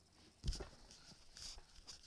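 Handling noise: a dull knock about half a second in, then a few light clicks and a short rustle.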